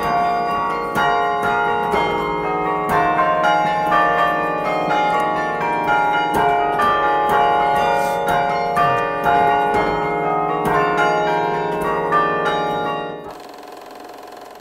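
Carillon bells played by hand from the baton keyboard, ringing out a melody of many quick strikes with long, overlapping tones. The music stops about a second before the end.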